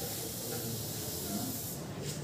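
A steady hiss of background noise that drops away near the end, with a low rumble beneath it.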